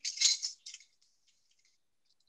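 A brief rattle and clink of kitchen utensils as half a teaspoon of cinnamon is measured out, lasting about half a second, followed by a few faint clicks.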